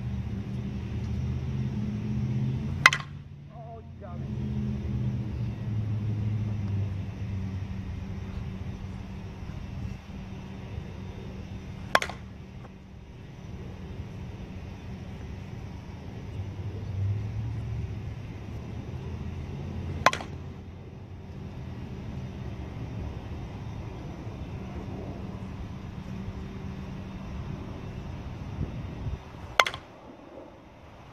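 A Miken Freak Platinum 12 composite slowpitch softball bat hitting pitched softballs: four sharp cracks, one about every eight to nine seconds.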